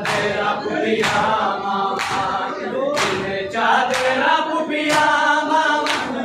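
A large group of men chanting a noha (Shia mourning lament) in unison, punctuated by sharp, rhythmic slaps of hands on bare chests (matam) about once a second.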